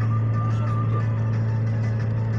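Steady low drone of a car's engine and road noise heard from inside the cabin while driving fast, with faint music from the car's stereo playing under it.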